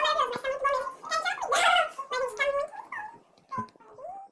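A girl's voice in excited, animated vocalising that the recogniser did not turn into words, trailing off about three seconds in.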